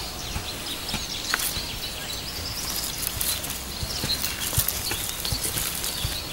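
Scissors snipping and rustling through a bulb's soil-caked root clump as the roots are trimmed: scattered light clicks over faint steady background noise.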